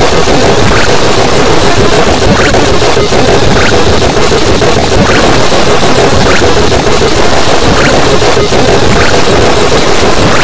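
Harsh noise music: a loud, unbroken wall of distorted noise, with short high squeals recurring about once a second.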